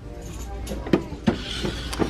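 Clear plastic storage bin handled and set back on a store shelf: a few light plastic clacks and a scraping, rubbing noise as it slides in among the other bins, over a low background hum.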